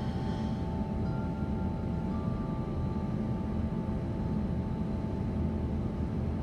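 Steady low rumble with a constant hum of several tones. A faint thin high tone sounds briefly about a second in, and again from about two to four seconds in.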